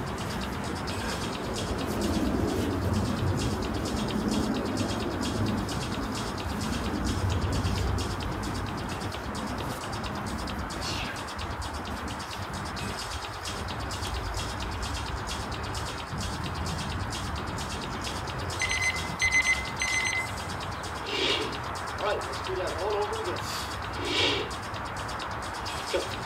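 Steady outdoor background noise, with a small bird chirping in a quick even series for about a second past the middle, and a few more short sounds near the end.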